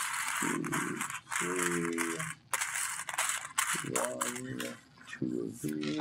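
Loose plastic LEGO bricks clattering and rattling as a hand sifts through a paper bowl of pieces, a thick run of small clicks, with brief low voice sounds a few times in between.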